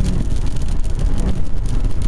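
Steady low rumble of a car in motion heard from inside the cabin, with wind buffeting the microphone.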